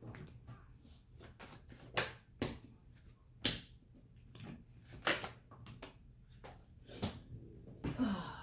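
Tarot cards being handled: shuffled by hand and laid down on the table, giving a run of irregular soft clicks and taps, with a few sharper snaps of cards along the way.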